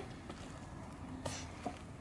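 Two soft taps of a cardboard tube being pressed onto a stretched canvas to stamp paint, a little past halfway and again shortly after, over low steady background noise.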